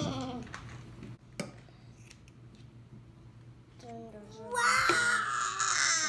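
A toddler's loud, high-pitched squealing cry with wavering pitch, starting about four seconds in and lasting to the end. Before it, a few faint snips of hair-cutting scissors.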